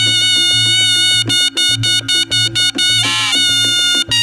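Live reog gamelan music: a slompret (shawm) plays a high, sustained, reedy melody over quick, evenly repeated percussion strokes and a low pulsing drum-and-gong beat. The slompret gives a brief louder, brighter blast about three seconds in.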